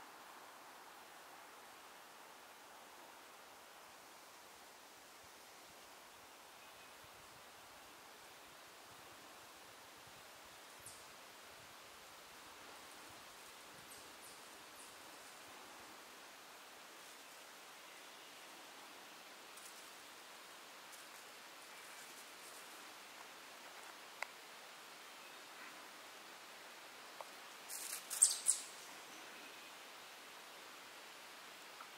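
Faint, steady woodland background hiss with a few faint ticks. Near the end comes a brief cluster of sharp, high-pitched sounds.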